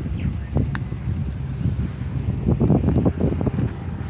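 Wind buffeting the microphone: an uneven low rumble that gusts up more strongly about two and a half seconds in.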